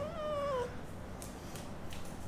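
A Scottish Fold cat giving one short meow that falls in pitch, lasting about half a second, right at the start.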